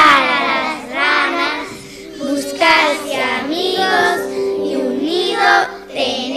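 A group of young children singing together in unison, in short phrases of about a second with brief pauses between them.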